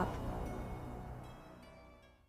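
Dramatic soundtrack music with sustained notes fading out to near silence.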